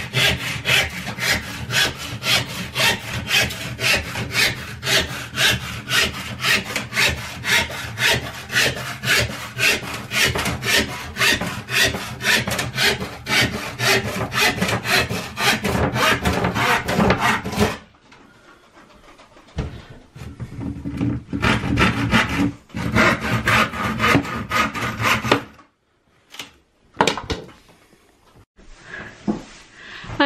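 Handsaw cutting through the wooden panel of a drawer unit in steady back-and-forth strokes, about three a second. The sawing stops after about eighteen seconds, resumes for a shorter run, then gives way to a few scattered knocks near the end.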